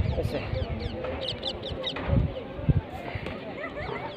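Small birds chirping, short quick up-and-down calls coming in clusters, over low gusty rumbles of wind on the microphone.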